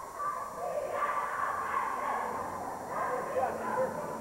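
Group of cheerleaders chanting and shouting a cheer together.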